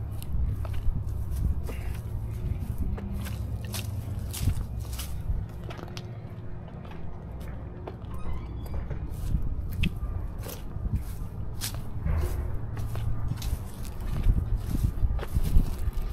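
Footsteps of a person walking across lawn and pavement, irregular short steps about one to two a second, over a low steady rumble.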